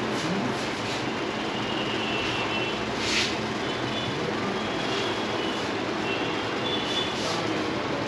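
Steady background noise in a hair salon, with faint short high tones now and then and one brief hiss about three seconds in.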